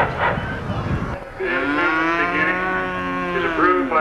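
A Texas Longhorn mooing: one long call of about two seconds that starts a little over a second in, its pitch rising slightly and then falling away. Before it there is a low rumble of wind on the microphone.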